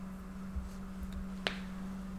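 Quiet background with a steady low hum, and a single short click about one and a half seconds in.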